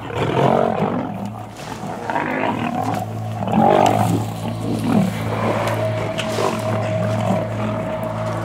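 Two male lions fighting, snarling and growling in several irregular bursts, the loudest about halfway through.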